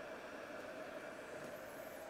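Faint, steady room noise: an even hiss with a faint constant hum.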